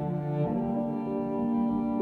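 Recorded music played back over Børresen M3 loudspeakers: held, bowed cello-like notes in a pause between sung lines, moving to a higher low note about half a second in.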